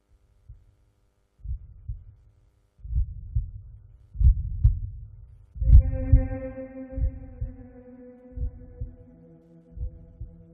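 Heartbeat sound effect: low double thumps (lub-dub), a pair about every second to second and a half, starting about a second and a half in. Just before halfway, a sustained ringing tone with a sharp onset joins and holds under the beats.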